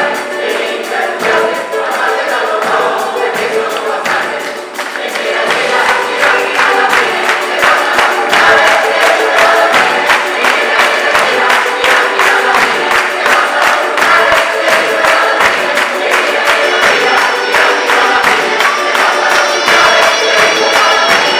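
Italian folk orchestra and large choir performing live: the choir sings over organetti (diatonic button accordions), guitars, frame drums and drum kit. About five seconds in, the music swells into a steady driving beat, and a high held note joins near the end.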